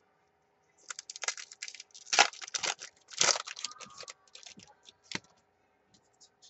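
A stack of trading cards being flicked through and handled: a quick run of clicks and snaps from about a second in until about five seconds in, loudest twice in the middle.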